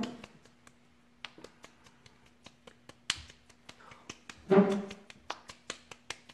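Hands coated in a thick, tacky gel essence being rubbed and patted together: quick, irregular sticky clicks and smacks as skin parts from skin, several a second.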